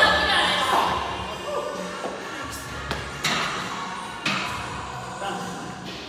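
Voices over background music in a gym, loudest in the first second, then a few sharp knocks about three and four seconds in.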